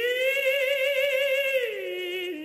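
A cantor singing solo and unaccompanied. He holds a high note for about a second and a half, then glides down.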